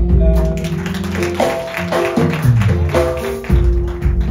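Church worship band playing instrumental music, with held keyboard-like notes over a bass line and some guitar.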